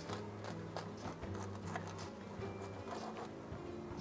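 Soft background music of sustained low notes, with the faint crackle of a serrated bread knife sawing through a baguette's crisp crust.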